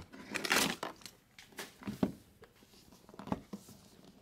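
A cardboard trading-card box and its packaging being handled: a brief rustling scrape about half a second in, then a few small taps and knocks.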